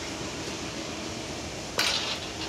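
A tall wooden gate being opened over a steady low background hum, with a sudden short clank near the end.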